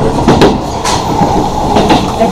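Electric commuter train running at speed, heard from inside the carriage: a steady rumble of wheels on rails with a few sharp clicks as the wheels cross rail joints.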